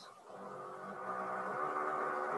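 A steady, buzzy engine-like drone with a fixed pitch, fading in about a quarter second in and slowly growing louder.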